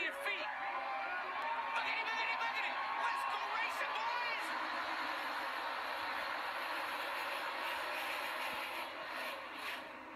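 The massed engines of a pack of NASCAR stock cars running at full throttle as the field takes the start, a steady noise heard through television broadcast audio. Excited shouting rises over it about two to four seconds in.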